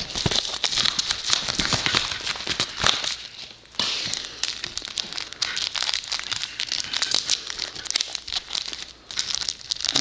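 Crinkling and rustling of a padded mailer envelope, a paper wrapping and a plastic card top loader being handled and unwrapped, with many small clicks and a brief pause about three and a half seconds in.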